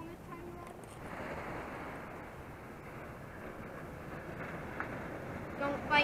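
Steady rushing wash of ocean surf on the beach, rising slightly about a second in and holding even.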